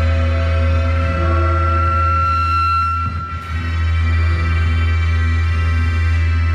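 Live electronic drone music: a steady low hum under long held tones at several pitches. A high held tone ends about three seconds in, with a brief dip in loudness before the drone swells back.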